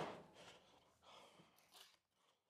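Near silence: room tone, with the tail of a hummed note fading out at the start and a couple of faint, brief noises later on.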